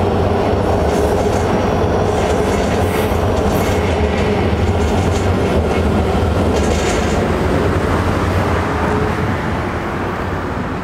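Metro train running on the elevated track overhead: a steady, loud rumble of wheels on rail with a faint held whine, easing off slightly near the end.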